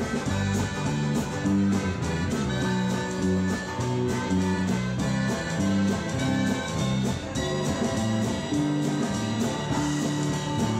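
Live band playing an instrumental break: harmonica lead over guitar, bass and a steady drum beat.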